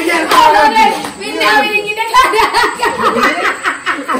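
Several people talking and laughing.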